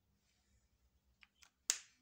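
A highlighter marker handled over paper: faint scratching, then a few light clicks and one sharp click near the end.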